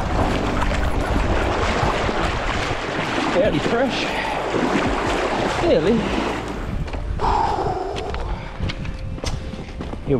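Wind rumbling on an action-camera microphone over the sound of water splashing close by, with sharp crunches of river stones underfoot in the last few seconds.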